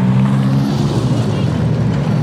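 Street sedan race cars' engines running hard on a dirt oval, several engine notes overlapping, with a shift in pitch about two-thirds of a second in.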